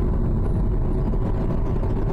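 A car driving at road speed: a steady low rumble of tyre and engine noise heard from inside the moving car.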